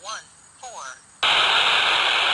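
Handheld FM radio receiving the SO-50 amateur satellite: loud static hiss drops away as a weak downlink signal comes through, carrying two brief garbled fragments of a ham operator's voice, and the static comes back just over a second in.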